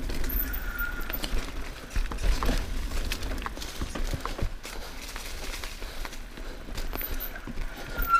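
Mountain bike rolling fast down a dirt singletrack: tyres crunching over packed earth and leaves, with the bike clattering over bumps and steady wind rumble on the camera. A short high squeal comes about half a second in.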